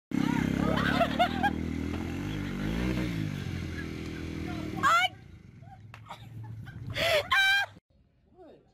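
Small motorbike engine running loud as the mini bike takes off, with excited whoops over it; after about five seconds it drops away. Near the end come a couple of high shrieking yells.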